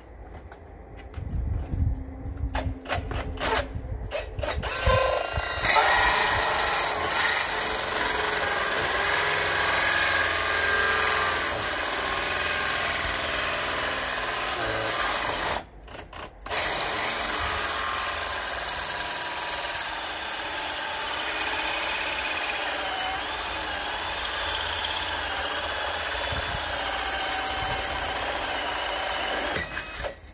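Cordless drill driving a Lenox carbide-tipped 2-1/8 inch hole saw into a stainless steel door cover plate. It catches and chatters for a few seconds as the teeth bite, then settles into a steady loud grinding of carbide cutting stainless steel. It stops briefly about halfway, then runs on until the cut goes through.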